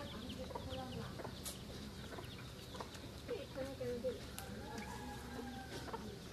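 Domestic hens clucking, a run of short calls about halfway through, over steady outdoor background noise.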